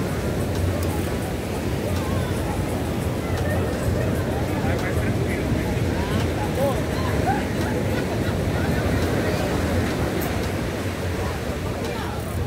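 Steady beach ambience of breaking surf, a constant low rumble, with faint chatter of people in the background.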